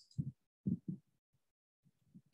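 A single soft computer-mouse click right at the start, followed by a few short, soft low thumps within the first second.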